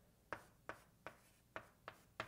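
Faint writing: five short ticks of a writing tool on its writing surface, spaced irregularly across two seconds.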